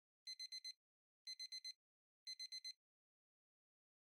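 Electronic beeping: three groups of four quick high-pitched beeps, one group about every second, then quiet.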